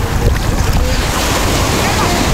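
Shallow surf washing around the legs and shore, with wind buffeting the microphone in a steady low rumble.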